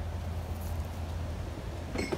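A vehicle engine idling, a steady low hum that holds without change.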